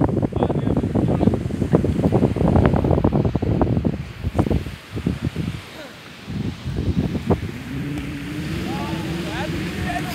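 Wind buffeting a phone microphone: an irregular low rumble that is strongest in the first four seconds and dips about halfway through. Faint voices are in the background, and a steady low drone comes in over the last two seconds.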